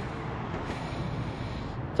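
Steady outdoor background noise: a low, even rumble of distant street traffic.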